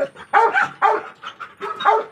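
Dog barking in short, quick barks, about three a second.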